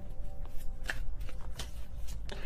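Tarot cards being shuffled by hand: a few soft flicks and rustles of the deck.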